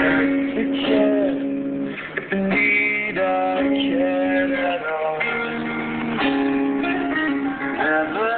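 Music with guitar playing on an FM car radio, heard inside the car's cabin.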